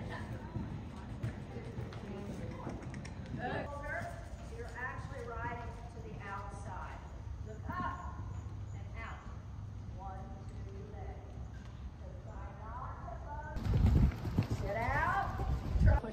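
A horse's hoofbeats at a walk on sand arena footing, with people talking in the background. A louder low rumble comes in near the end.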